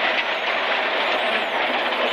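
Ford Focus WRC rally car driven hard on a gravel stage, heard from inside the cabin: a steady, loud mix of engine, drivetrain and gravel road noise, with a faint high whine that rises and falls.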